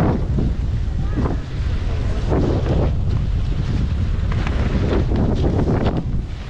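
Wind buffeting the microphone while moving downhill on a groomed ski slope, a steady low rumble, with irregular short scrapes of edges sliding over packed snow.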